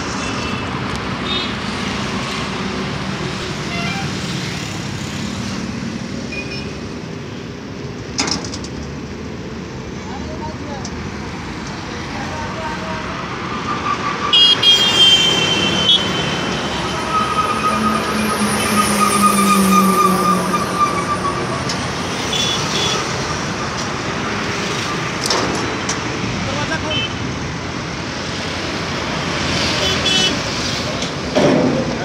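Steady outdoor street traffic noise with vehicles running by, with a vehicle horn tooting briefly about halfway through and some voices in the background.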